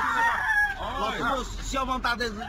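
High-pitched, rising-and-falling wailing and shouting from several distressed people at once, over a low rumble of wind on a phone microphone.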